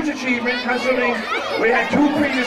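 A man speaking into a microphone over a public-address system, with crowd chatter behind.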